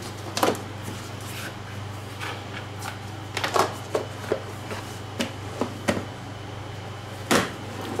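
Plastic lids pressed and snapped onto plastic food containers, and the containers set down and stacked on a countertop: a scattered series of short plastic clicks and knocks, the loudest one near the end.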